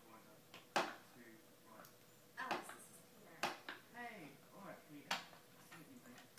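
Four sharp wooden knocks and clacks, spaced about a second or two apart, as a baby bangs on a wooden activity cube with a bead maze. Faint voice sounds come between the knocks.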